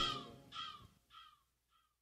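The song ends and a short pitched sound from the track's outro repeats about four times as an echo, each repeat fainter until it dies away.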